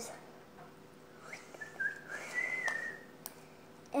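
A person whistling one soft, thin note for about a second and a half, wavering and then rising slightly, starting a little over a second in. Faint sticky clicks come from slime being worked in the hands.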